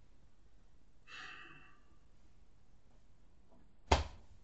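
A man's breathy sigh, air blown out through pressed lips about a second in, over quiet room tone; a single short, sharp click comes near the end and is the loudest sound.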